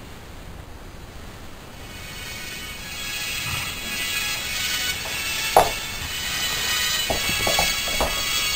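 Music played from a phone through in-ear piston earphones, fading in and growing louder, with a sharp click about halfway through and a few light knocks near the end.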